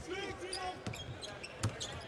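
A basketball being dribbled on a hardwood court: a few separate bounces under the arena's background noise.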